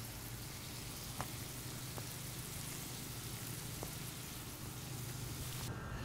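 Burger patties and buttered buns frying in bacon grease on a hot flat-top griddle: a steady sizzle with a few faint pops.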